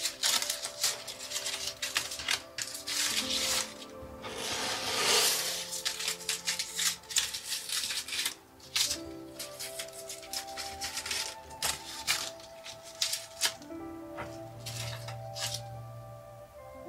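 Dry, papery chestnut leaves crackling and rustling as a hand grasps and pulls at them on a small tree, in quick crinkly clicks with a longer, louder rustle about five seconds in. Soft background music with held notes plays throughout.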